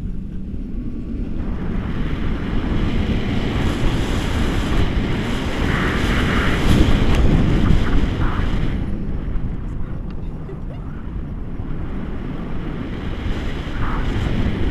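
Wind rushing over an action camera's microphone on a paraglider in flight, a steady loud buffeting. It swells through the middle and eases off a little after about ten seconds.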